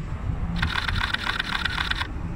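Canon R5 camera firing a rapid burst of shutter clicks, starting about half a second in and lasting about a second and a half, over a low street rumble.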